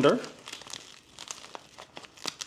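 Nylon belt webbing and a Velcro flap rustling and scraping in the hands as a belt is slid under the flap, with scattered small clicks.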